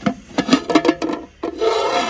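An aluminium cooking pot's lid and a metal ladle being handled: a quick run of sharp metal clicks and knocks, then a rasping scrape about one and a half seconds in as the lid is slid off the pot's rim.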